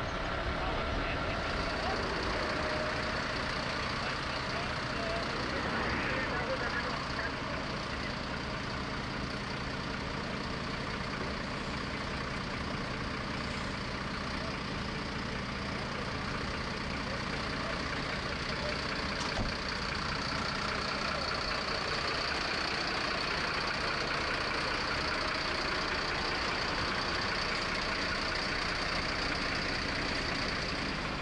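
Fire-engine diesel engines idling, a steady hum with a thin high whine above it.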